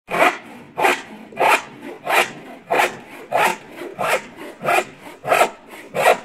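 Hand saw cutting wood in regular back-and-forth strokes, about one and a half strokes a second.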